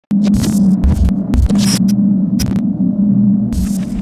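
Loud, steady electrical buzz with irregular crackles of static, a glitch-style sound effect under a channel logo intro; the crackles come thickest in the first two and a half seconds.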